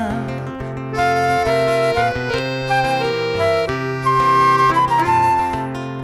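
Instrumental passage of a chamarrita: a piano accordion holds sustained melody notes over acoustic guitar accompaniment and a steady bass line.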